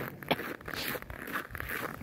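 Irregular scratchy rubbing and crunching of walking on deep-frozen snow, with clothing rustling close to the phone's microphone and a sharp click about a third of a second in.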